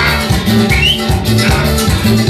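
Live band playing an instrumental passage of a cumbia: electric guitar, a bass line pulsing about four times a second, drums and percussion.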